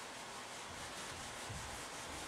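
Felt whiteboard eraser rubbing across a whiteboard, a steady soft scrubbing as the written working is wiped off.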